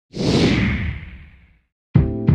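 Whoosh sound effect: a single swoosh with a low rumble beneath it that starts at once, falls in pitch and fades out over about a second and a half. A short silence follows, and music starts with a hit right at the end.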